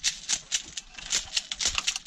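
Airsoft BBs rattling in a container shaken in quick strokes, about five rattles a second.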